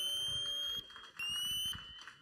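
Electronic dub siren from the sound system's mixer: a high tone that sweeps upward and holds, cuts off just under a second in, then sounds again briefly with a slight rise.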